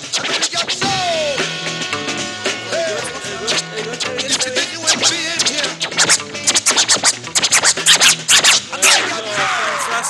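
A vinyl record being scratched by hand on a DJ turntable over a playing beat. It is a basic back-and-forth scratch, with the strokes coming thick and fast in the second half.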